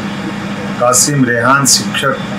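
A man speaking in Hindi, with a steady low hum behind the voice.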